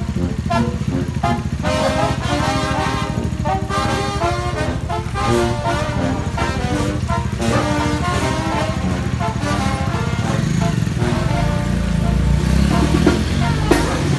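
Brass band with a sousaphone playing a melody in held notes, over the low running of a nearby vehicle engine that gets louder in the last few seconds.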